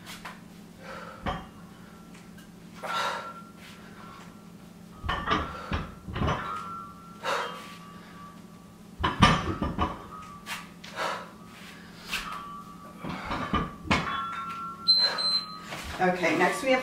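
Plate-loaded barbell clunking and knocking in an irregular series of short hits while deadlifts are lifted and lowered. A short high beep just before the end, an interval timer signalling the end of the set.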